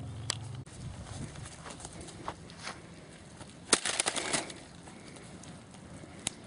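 A laptop being struck in an attempt to smash it: one sharp hit just after the start, then about four seconds in a cluster of hard knocks and rattling, the loudest of them first. The blow knocks the lid off the laptop without breaking the screen.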